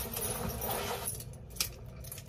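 Keys on a keychain jangling and a bag rustling as belongings are handled, with a couple of small sharp clicks in the second half.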